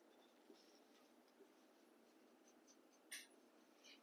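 Faint strokes of a felt-tip marker writing on a whiteboard, barely above room tone, with a slightly sharper tick about three seconds in.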